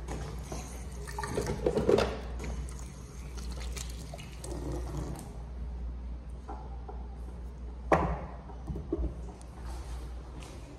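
Water from a sensor faucet running and splashing over hands into a sink, loudest about two seconds in, over a steady low room hum. About eight seconds in there is a single sharp knock. The Dyson Airblade AB02 hand dryer does not start: it is out of order.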